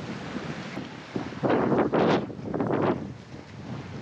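Wind buffeting the microphone, with a few louder rough gusts in the middle of the stretch.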